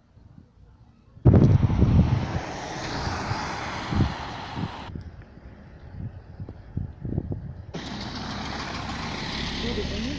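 Rushing road and wind noise of a moving vehicle, in two stretches that start and stop abruptly, with a few knocks in the quieter gap between them.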